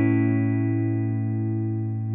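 Ibanez electric guitar chord, played through a Boss EQ-200 graphic equalizer pedal, ringing out and slowly fading.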